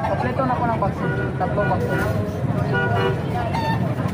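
Busy street ambience: people talking in the background over passing traffic, with several short vehicle horn toots.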